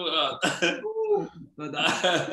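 A man's voice, unworded vocal sounds with throat clearing.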